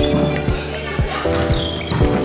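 Background music with a steady beat of about two thumps a second under held chords.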